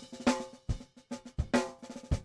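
Multi-miked acoustic drum kit playing, with scattered snare and kick hits and some ringing. It is heard through a TASCAM Model 12 mixer's main output while the channel faders are being raised.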